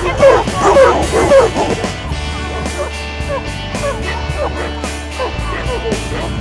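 Dogs barking and yipping over background music, with a loud flurry of barks in the first two seconds and scattered ones after.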